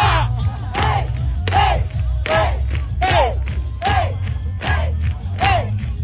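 A troupe of street dancers shouting in unison as they dance, about eight short shouts evenly spaced, each rising then falling in pitch, over a steady low rumble.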